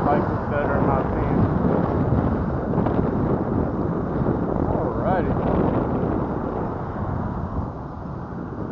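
Wind rushing over the microphone of a camera on a moving bicycle, with a steady rumble from the tyres rolling over the concrete sidewalk.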